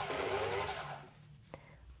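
Fur sewing machine running steadily as it stitches, stopping about a second in; a single short click follows near the end.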